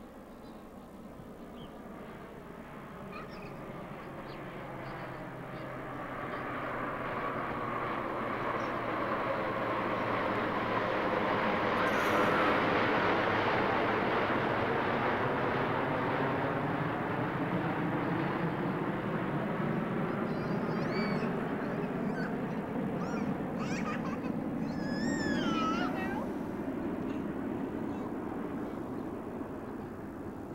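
Jet airplane flying past overhead: a rushing jet noise swells for about twelve seconds, peaks, and slowly fades, with a sweeping, phasing quality as it passes. A few short high calls from a voice come through near the end.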